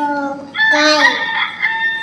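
A rooster crowing: one long call that starts about half a second in and runs on for nearly two seconds.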